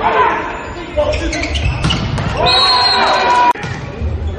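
Indoor volleyball rally: a ball being struck over the sound of the arena's crowd and voices. About three and a half seconds in, the sound cuts off abruptly into another rally.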